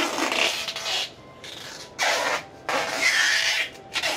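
Rubbing and scraping of a tape measure and a hand against the bark of a yellow apricot (mai vàng) tree trunk during measuring, in three short spells.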